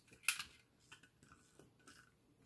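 Small toy vehicles being handled and set against one another: one sharp click about a quarter second in, then a few faint clicks and taps.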